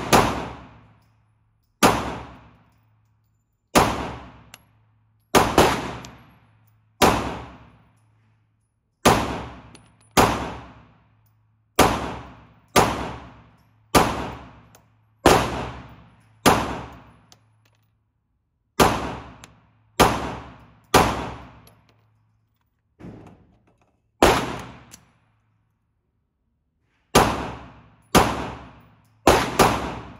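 Steyr C9-A1 9mm pistol fired in slow single shots, about one every one to two seconds with a few quicker pairs, each shot ringing off in the echo of an indoor range. A steady low hum runs under the shots and stops about 23 seconds in.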